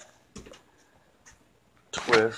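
Mostly quiet handling of a sheet of galvanized steel pool siding, with one brief soft knock about half a second in and a couple of faint ticks later as the stiff sheet is shifted into position for bending.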